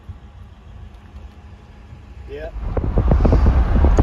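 A quiet low rumble, then, about two and a half seconds in, a loud low rumble with gusty buffeting: wind on the microphone and road noise from a car driving along a street.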